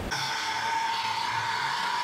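A steady electronic tone, several pitches held together without wavering over a faint hiss, cutting in abruptly.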